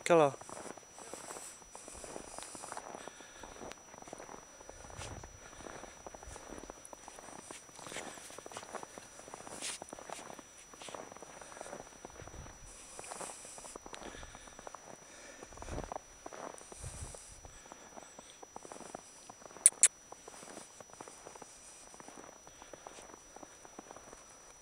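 Footsteps and movement in snow: irregular soft crunching and rustling, with two sharp clicks close together a little under twenty seconds in.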